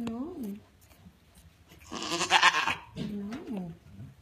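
African pygmy goat doe in labor bleating once, loud and harsh, about halfway through: a call of discomfort from a heavily pregnant doe restless on her kidding day. Shorter sing-song voiced sounds come just before and after it.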